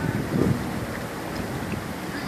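Wind buffeting the microphone: an uneven low rumble with a stronger gust about half a second in.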